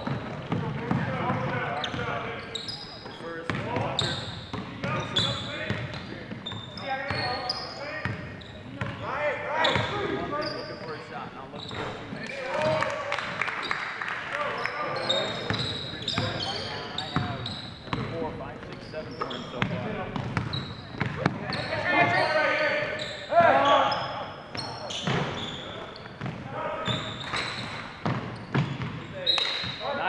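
Basketball being dribbled on a hardwood gym floor, with sneakers squeaking and players' voices calling out, all echoing in the large hall.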